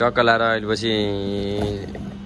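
A man's voice making drawn-out, sung vowel sounds: a short one, then a longer held one whose pitch slides slowly down. A steady low hum runs underneath.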